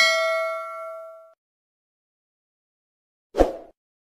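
Sound effects of an animated subscribe-and-bell reminder: a bright bell ding rings out and fades over about a second. A short, soft noisy hit follows near the end.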